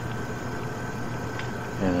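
Pause in a man's narration on a home-made cassette recording: steady tape hiss with a low electrical hum and a faint steady high tone underneath. His voice comes back near the end.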